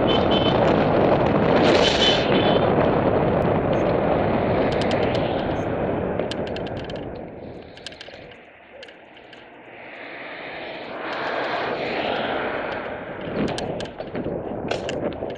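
Wind buffeting the microphone of a camera on a moving bicycle, loud at first, dying down about eight seconds in and building again, with a few light ticks in between.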